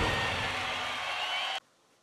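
A noisy, hiss-like wash from an outdoor concert stage just after a song's last note, fading slowly and cutting off abruptly about one and a half seconds in.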